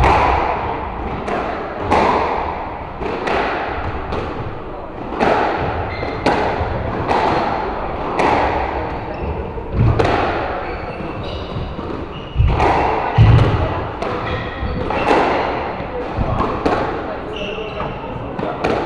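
A squash rally: the ball cracks off rackets and the court walls about once a second, each hit ringing out in the enclosed court, with heavier low thuds mixed in.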